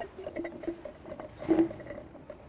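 Hand unscrewing the threaded plastic cover of a Bermad C10 air valve: faint scraping from the turning threads, with a few short squeaks, the clearest about a second and a half in.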